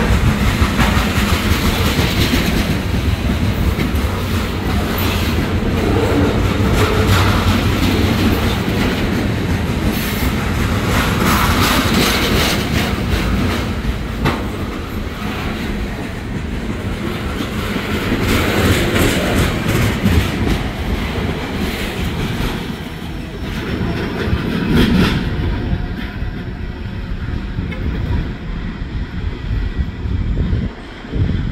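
Freight train's high-sided trash cars rolling past close by, steel wheels clacking rhythmically over the rail joints. The sound dies down near the end as the last car passes and rolls away.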